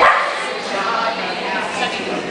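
A dog barks once, sharply, right at the start, over people talking.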